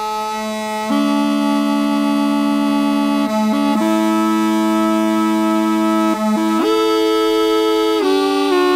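Replica of the Louvre aulos, an ancient Greek double-reed double pipe, being played: one pipe holds a steady low note while the other sounds long held notes above it, entering about a second in and stepping to new pitches a few times.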